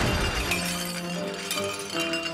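Cartoon sound effect of a glass blender jar shattering as the blender explodes: one sudden crash of breaking glass at the start, over background music.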